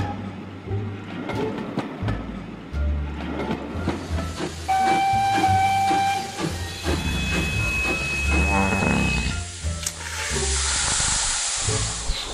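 Recorded steam locomotive sounds over background music: a steam whistle blows about five seconds in, a higher whistle tone follows soon after, and near the end a long hiss of escaping steam as the engine draws up.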